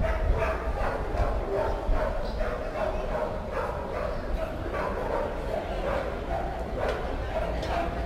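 A dog barking repeatedly in short, irregular yaps, with people's voices around it.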